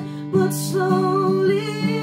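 Acoustic guitar strummed in a slow ballad, with a woman singing over it. Her voice comes in about half a second in, after a brief lull.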